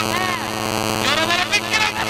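A man's voice over a public-address microphone, its pitch sweeping up and down in long arcs, mostly in the second half, over a steady electrical hum from the sound system.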